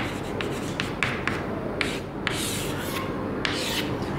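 Chalk on a chalkboard: short scratches and taps of handwriting, then a few longer scraping strokes as lines are drawn to box in the answer.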